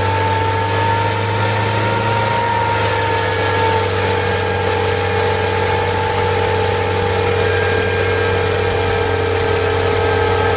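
Truck-mounted soil-test drill rig running steadily with a constant droning note while its flight auger turns and is drawn up out of the test hole; the note shifts slightly about three or four seconds in.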